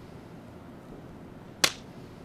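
Quiet room tone, broken once by a single sharp smack about one and a half seconds in.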